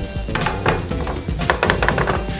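Sizzling from a hot sheet pan of oven-roasted asparagus, with several light metal clatters as the tray is set down on the gas stovetop grates.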